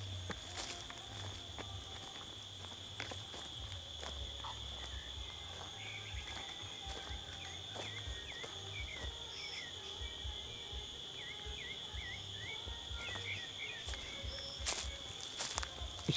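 A sabiá thrush singing faintly, a string of short whistled notes through the middle stretch, over a steady high insect drone and footsteps on dry leaves.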